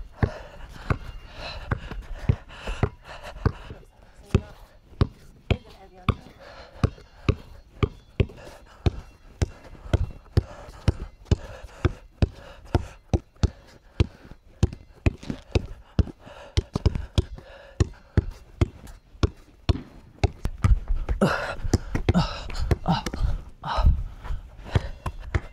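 Basketball dribbled on a concrete slab: a steady run of sharp bounces, about two to three a second.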